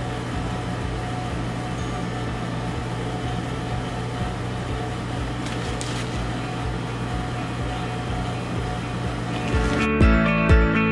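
Steady hum of a cooling appliance running in a small room, a constant low drone with even hiss above it. Music comes in at the very end.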